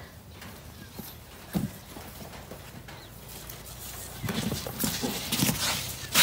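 A baby elephant moving about on sand: a couple of soft thuds early, then louder scuffing and knocking from about four seconds in as it comes up close.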